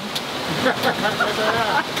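Steady rush of wind and water around a sailboat under way, with a voice laughing or talking over it.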